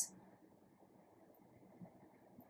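Near silence: faint steady hiss, with one brief faint sound near the end.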